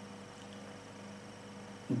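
Faint, steady electrical hum with a light hiss underneath: background room tone of the recording.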